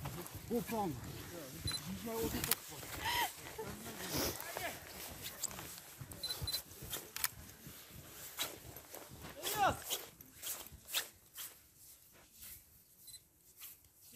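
Footsteps crunching through deep snow, an irregular run of short crunches, with faint voices of a group now and then.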